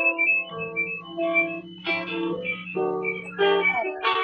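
Acoustic guitar playing a slow run of notes over a held low note, heard through a video call's audio.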